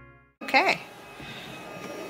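Background music fades out, then a short vocal exclamation with a rising-and-falling pitch comes about half a second in, followed by quiet room tone.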